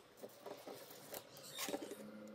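Light scratching and clicking of hard plastic as fingers work inside a cut PVC pipe lampshade, with a brief flurry of scrapes near the end.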